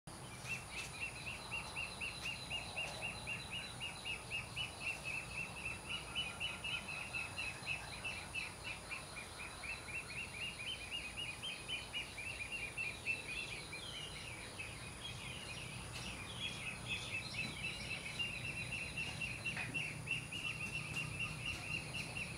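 Outdoor ambience of rapid, high-pitched chirping, several chirps a second in a steady run that briefly changes pattern in the middle, over a faint steady high whine.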